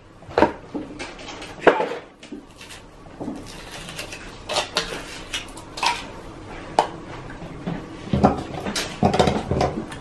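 Hands unwrapping and opening a Kinder Surprise chocolate egg: foil crinkling, with irregular light clicks and taps from the chocolate shell and the plastic toy capsule, busier near the end.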